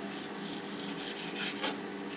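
A kitchen knife sawing through partly frozen beef on a plastic cutting board, a faint rasping, with one sharper click of the blade about one and a half seconds in. A faint steady hum sits underneath.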